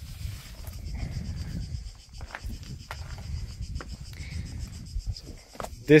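Outdoor ambience of a steady, high-pitched insect chorus, with a low rumble on the microphone and a few scattered scuffs and clicks of handling and steps on stone.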